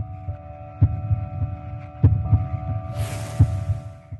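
Deep heartbeat-like thuds, a group about every 1.3 seconds, over a steady humming drone of several held tones. A hiss swells in near the end before everything fades.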